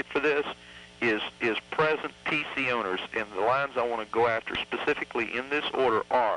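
Speech: men talking in conversation on an old recording, with a faint steady hum beneath.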